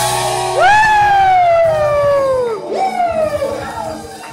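A loud, high whoop from a person in the crowd or on stage: it rises sharply, then slides slowly down in pitch for about two seconds, followed by a second, shorter whoop, over the rock band's music.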